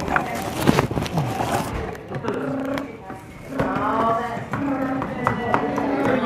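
People talking at a party, with rustling and handling knocks in the first two seconds. Several short, steady beeps at one pitch repeat through the rest.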